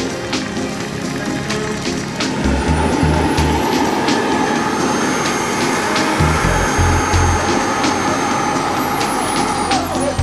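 Model jet turbine engine running with a rushing hiss and a thin high whine that climbs slowly in pitch, then falls away suddenly near the end. Music with a thumping bass beat plays underneath.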